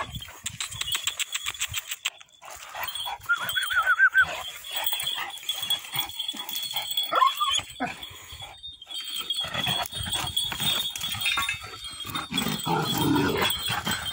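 Dog whining: one arching, high-pitched whine lasting about a second, some three seconds in, and a shorter one a few seconds later, among scuffling noise.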